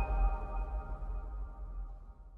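Electronic logo-sting sound effect dying away: several steady ringing synth tones over a low rumble, fading out steadily.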